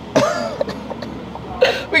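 A person coughs briefly, just after the start. A voice begins speaking near the end.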